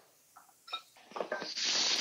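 A few light clinks, then chopped tomatoes sizzling as they go into a hot oiled pan of sautéing onions. The sizzle builds through the second half.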